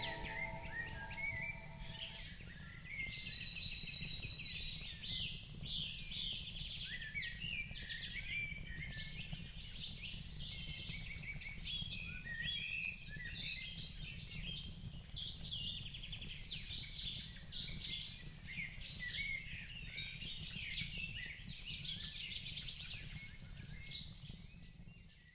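Faint woodland birdsong: many birds chirping and singing over a steady low rumble. The last notes of music die away in the first two seconds.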